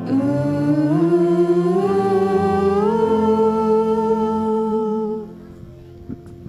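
Voices singing the last drawn-out notes of a hymn, the melody stepping upward in a few held notes and then stopping about five seconds in.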